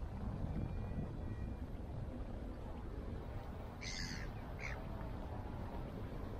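Two short bird calls about four seconds in, the second briefer, over a steady low rumble of wind on the microphone.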